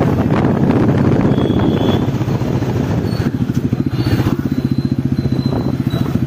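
Royal Enfield Classic 350's single-cylinder engine and exhaust running with a steady, even beat as the bike rides along.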